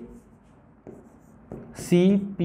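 Faint scratching of writing on a board, a few short strokes, then a man's voice starts near the end.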